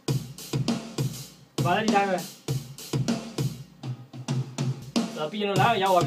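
A steady programmed drum kit beat with kick and snare, played back from Ableton Live and triggered from a Novation Launchkey keyboard controller, with a voice over it around two seconds in and near the end.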